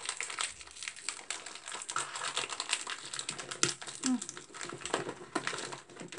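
The plastic wrapper of a small cookie pack being torn open and crinkled by hand: a dense, irregular run of small crackles.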